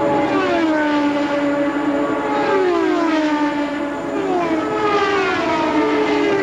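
IndyCar 3.5-litre V8 engines at racing speed on an oval, several cars passing in turn, each engine note falling in pitch as it goes by.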